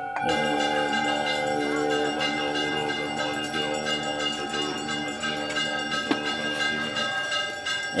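Bells ringing: a fresh strike about a quarter second in, then several long sustained, overlapping tones. Faint chanting voices run underneath.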